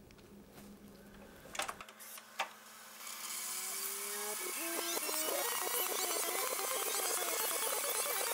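Cassette tape sound effects: two short clicks, then tape hiss rising about three seconds in, with a whirring, warbling sound of tape winding over it.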